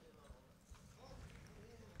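Near silence: room tone during a pause in speech, with a faint tap about a third of a second in.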